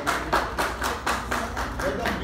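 An audience clapping in quick, fairly even claps, about five a second, with voices over it.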